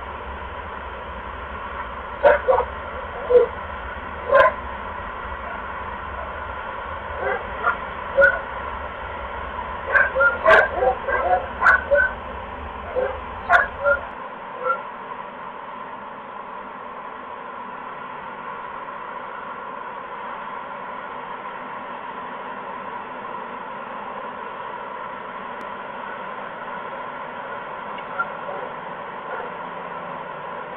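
A series of about twenty short, pitched animal calls, sometimes in quick runs, over a steady hiss and hum; the calls stop about fifteen seconds in.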